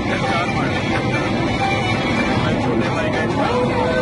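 Steady drone of an airliner cabin in flight, with music and voices over it.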